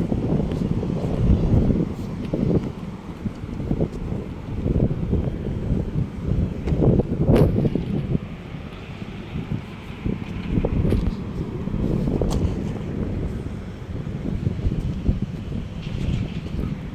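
Wind buffeting a phone microphone, a rough low rumble that gusts up and down, with a few sharp clicks, the loudest about halfway through.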